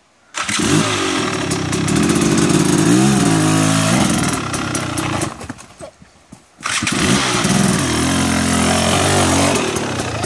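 Dirt bike engine starts abruptly, revs up and down, cuts out about five seconds in, then starts again a second and a half later and keeps revving.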